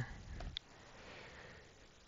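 Faint breath drawn through the nose, with a single soft keyboard click about half a second in.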